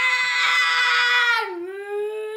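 A young girl screaming in a tantrum: one long high scream held on a steady pitch, then dipping slightly lower and softer after about one and a half seconds, trailing into a wail.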